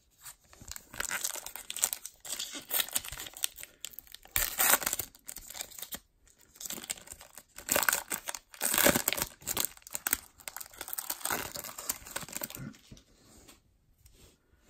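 Foil wrapper of a baseball card pack crinkling and tearing as it is ripped open and peeled back from the cards, in irregular crackly bursts. The loudest tears come about four and a half and nine seconds in, and it quiets near the end.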